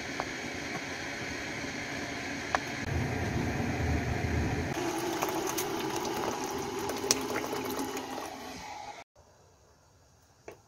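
Hot water poured from an electric kettle into a pot, a steady splashing fill, with a few sharp knife taps on a cutting board in the first seconds. The sound cuts off abruptly about nine seconds in.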